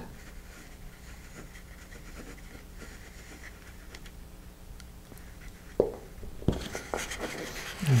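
Quiet room tone with faint handling sounds as a small glue bottle is worked along a paper tube. Near the end comes a click, then a paper towel rubbing over the glued tube.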